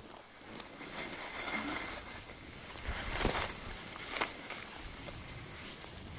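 Skis sliding over snow, a steady hiss with a couple of brief scrapes about three and four seconds in.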